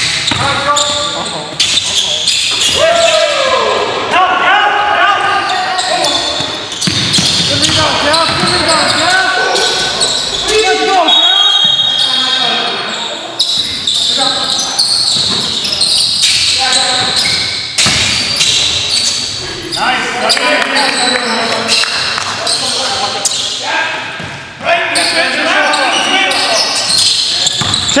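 Basketball being dribbled on a gym's hardwood floor during play, with players' voices calling out. The sounds echo in the large hall.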